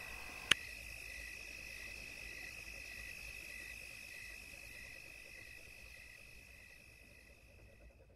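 Crickets chirping steadily: a continuous high trill with a second chirp pulsing a little under twice a second, fading out toward the end. A single sharp click comes about half a second in.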